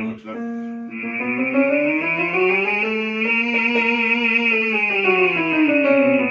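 A man singing a vocal scale exercise on a held vowel with vibrato, over keyboard piano accompaniment. After a brief break in the first second the voice climbs in pitch, holds, and slides back down near the end.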